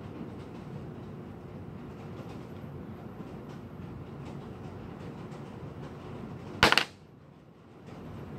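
Steady low room hum, then about two-thirds of the way in a single sharp, loud double clack as the piston of a .460 Rowland V2 damper motor, held apart against its vacuum, comes free of the cylinder and drops onto the board.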